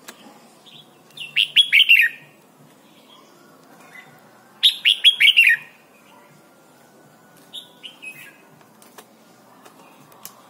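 Red-whiskered bulbul singing: two loud phrases of about a second each, a few seconds apart, each a quick run of downward-sweeping whistled notes, then a softer, shorter phrase near the end.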